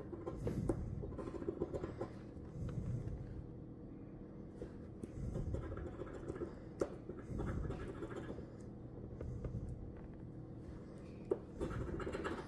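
A large metal coin scraping the coating off a paper lottery scratch ticket in repeated faint strokes, with a couple of sharp ticks.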